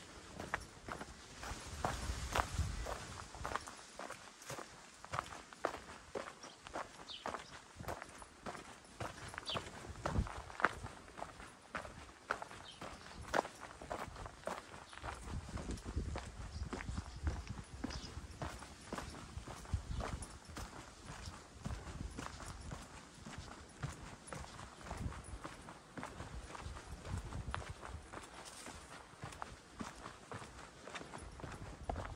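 Footsteps of a person walking at a steady pace on an earth and gravel footpath, about two steps a second.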